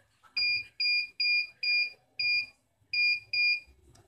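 Seven short, high electronic beeps from the vending machine's buzzer, unevenly spaced, one for each key pressed on its 4x4 keypad as a pass key is entered.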